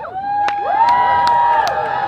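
A crowd cheering and whooping, many voices holding long cheers that start all at once, with scattered sharp claps.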